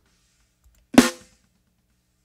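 A single recorded snare drum hit about a second in, with a short ring, played back soloed through gating, compression and a limiter that holds its peaks. The bottom snare mic is blended in, giving it a rattly sound.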